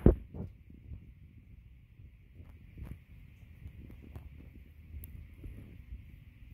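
A single sharp knock at the start, then low rumble and faint scattered ticks from a handheld camera being moved, over a faint steady high-pitched whine.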